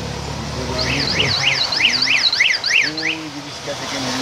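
A vehicle's electronic alarm warbling rapidly up and down, about four sweeps a second, for about two seconds, over steady street and water noise.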